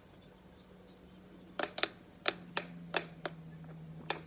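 A stainless steel straw clicking against a plastic blender cup as it stirs a thick, icy smoothie: a handful of light, sharp clicks in the second half, over a faint steady hum.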